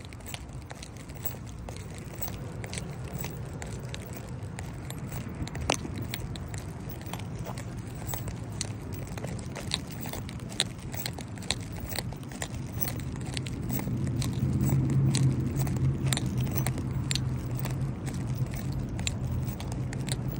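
Walking outdoors: scattered clicks and rustles from footsteps and the handheld phone, over a steady low traffic rumble. A low vehicle engine hum grows louder about two-thirds of the way in.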